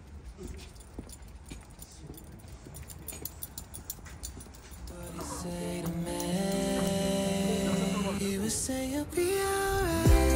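Quick, faint clicking of a small dog's claws and paws on stone paving through the first half. About five seconds in, background music with long held tones fades in and takes over.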